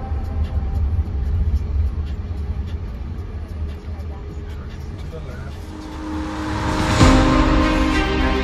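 Low rumble inside the cabin of a Waymo Jaguar I-PACE electric car rolling slowly in traffic. About six seconds in, background music comes in and swells to a peak around seven seconds.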